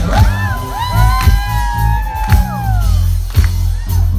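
Live band playing a dance-pop song over a steady bass and drum beat, with long gliding whoops from voices over it in the first few seconds.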